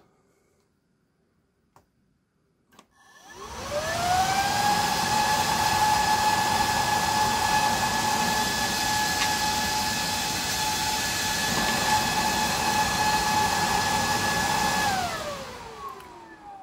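San Ace 6000 RPM axial fan powered up at 12 V: a whine rising in pitch as it spins up about three seconds in, then a loud steady rush of air with a steady whine at full speed. Near the end the power is cut and the whine falls as it spins down.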